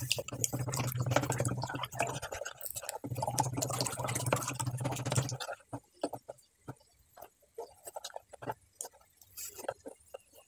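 A spoon stirring a thin liquid batter of eggs, condensed milk and water in a bowl: quick clicks and scrapes of the spoon with liquid sloshing, over a low steady hum for the first five seconds. After that only scattered taps of the spoon remain.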